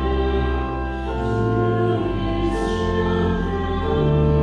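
Voices singing a hymn over held keyboard chords that change about once a second.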